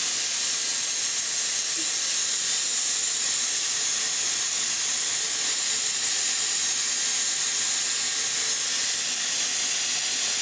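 Corded hot-air brush (round-brush hair dryer) blowing steadily: an even, high-pitched hiss at constant strength.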